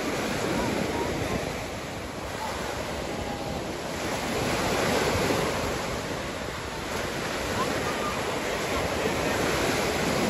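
Gulf of Mexico surf: small waves breaking and washing in at the shoreline, the rushing sound swelling and ebbing every few seconds.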